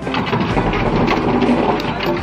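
Storm noise: a loud rushing hiss and crackle like heavy rain and wind, cutting in suddenly and easing off near the end.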